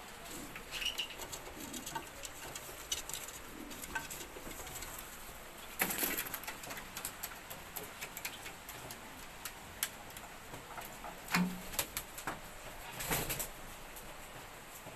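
Domestic pigeons in a loft: a brief low coo, and louder bursts of wing-flapping about six seconds in and again near the end, among scattered small clicks and scrapes.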